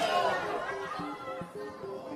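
Background music of short sustained notes under an audience's chatter and scattered voices; the crowd is loudest at the start and fades over the first second.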